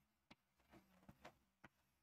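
Near silence broken by about five faint, short ticks of chalk tapping on a chalkboard during writing.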